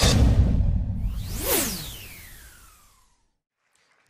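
Logo-reveal sound effects: a deep boom at the start, then a whoosh about a second and a half in with pitches sweeping both up and down. It fades away by about three seconds.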